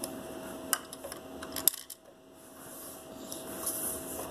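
A few light, sharp plastic clicks and taps as Lego pieces are handled and set in place, over a faint steady hum.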